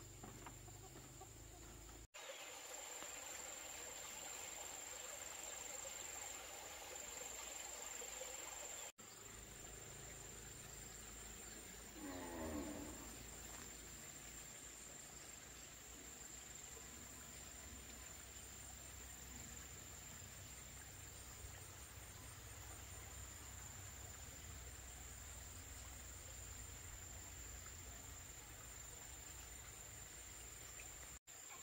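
Steady high-pitched insect drone, with a chicken calling once for about a second, about twelve seconds in.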